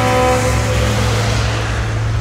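Dump truck passing close by, its horn sounding one steady tone that fades away during the first second or so, with a rushing noise and a continuous low hum underneath.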